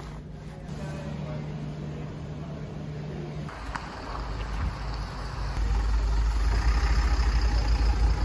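A steady low hum gives way, about three and a half seconds in, to a rescue truck's engine running and growing louder as the truck approaches.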